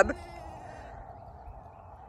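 A young goat kid's bleat trails off right at the start, followed by a faint, steady outdoor hum.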